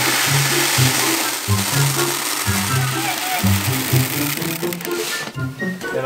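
Grain poured from a container into a plastic bucket, a steady rushing hiss that stops abruptly about five seconds in, over background music.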